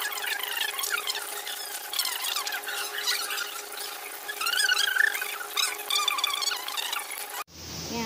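Sped-up kitchen audio: high-pitched, squeaky chattering glides and rapid light clicks, as of a fork beating eggs in a glass bowl played fast, over a steady hum. It cuts off abruptly near the end.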